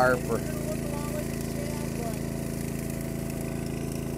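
Small engines on an electrofishing boat running steadily with a low, even hum. The boat's generator keeps running to power the electric field in the water.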